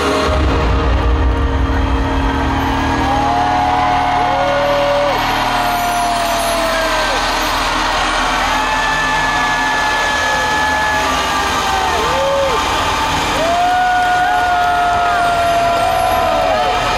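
Arena crowd cheering and screaming in a steady roar, with long drawn-out shouts and whistles held over it, several falling off in pitch at their ends.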